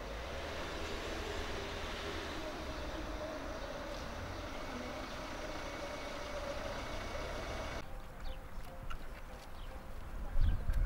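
Steady outdoor background noise with a constant faint hum, like road traffic. About eight seconds in it cuts to a quieter background with a few short, high chirps.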